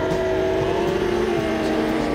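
Car engine running hard at high, steady revs, its pitch easing slightly around the middle.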